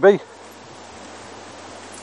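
A spoken word ends at the very start, then steady outdoor background noise with wind on the microphone.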